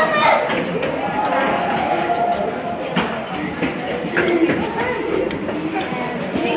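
Indistinct talk of spectators in an ice-hockey arena during play, with a sharp knock from the play on the ice about three seconds in and a smaller one just after.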